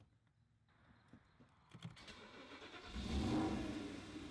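Car engine starting about two seconds in, after a few faint clicks, swelling briefly and then settling.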